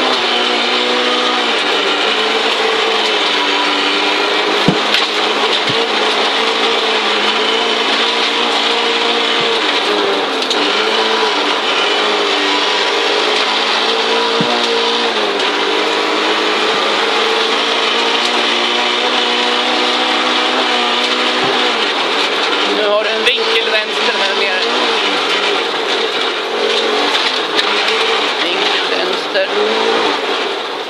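Audi Quattro Group B rally car's turbocharged five-cylinder engine heard from inside the cockpit at stage pace, its pitch rising and falling as it revs up and shifts through the gears. A few sharp knocks come through the body, with a cluster of them a little past the middle.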